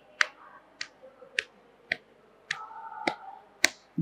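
Sharp single claps keeping a steady beat of just under two a second during a pause between sung lines of a devotional bhajan, with a faint held voice in the background past the middle.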